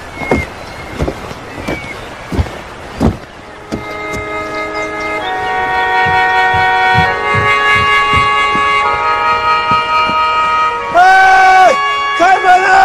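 Heavy footsteps thudding on wooden plank stairs, about one step every 0.7 s, for the first three seconds. Then film-score music of sustained chords swells in and grows louder. Near the end a man shouts loudly.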